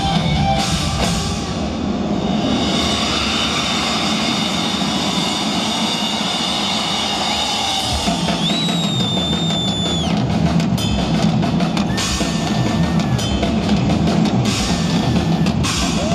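Live rock drum solo on a full drum kit, heard through a large concert PA from the audience: a steady run of bass drum strokes under cymbal wash.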